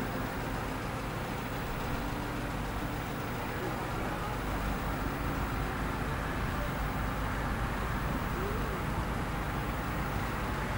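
Steady outdoor show-ground background: a constant low rumble with indistinct voices in the distance.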